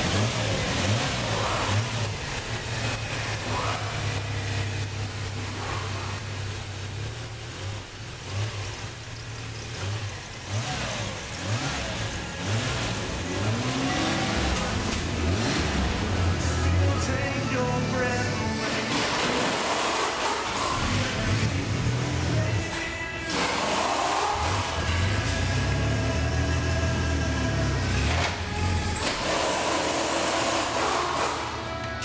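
1991 Chevy S10's 2.8-litre V6 engine running, its pitch rising and falling as it is revved.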